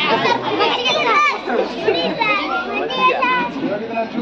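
A crowd of schoolchildren's voices, many talking and calling out at once.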